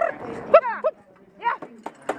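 A carriage driver's short, sharp voice calls urging a driving pony on: about five quick calls in two seconds, each rising and then falling in pitch.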